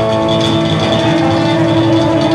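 Live rock band playing, with an electric guitar holding one long note over drums and bass.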